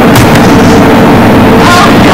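Loud, heavily distorted noise held near full volume, with a faint steady tone running through it.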